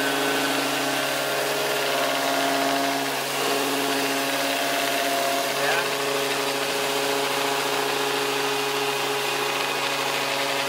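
Handheld electric disc sander running steadily as it sands the curved plywood edge of a round window frame.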